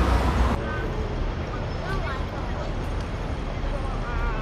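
Busy city street traffic noise with faint voices of passers-by. A heavy low rumble stops abruptly about half a second in.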